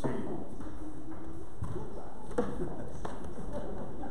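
Faint voices talking, with a few soft knocks and taps.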